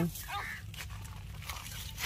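A hen being caught by hand in a pile of dry brush: faint rustling and crackling of dry twigs and leaves, with a short, faint hen call about half a second in.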